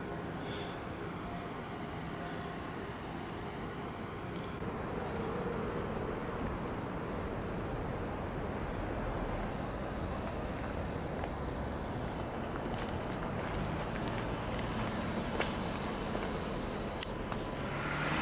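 Steady city street ambience, a continuous haze of distant traffic, with a couple of faint clicks near the end.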